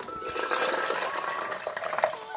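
Liquid being poured into a container, a steady rushing splash.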